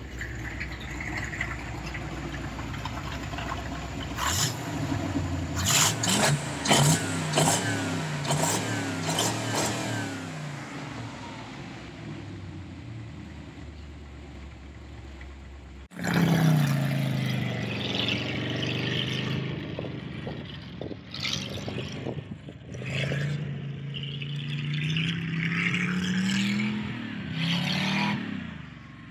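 Chevrolet 327 Turbo-Fire small-block V8 running, its pitch wavering with quick revs and a few sharp knocks in the first several seconds, then settling to a steadier idle. After a sudden cut, the engine revs up and down in long swells as the truck drives.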